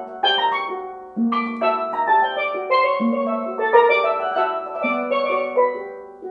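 Tenor and double second steel pans playing a duet. Low ringing notes are struck about every one and a half to two seconds, under a quicker line of struck notes higher up.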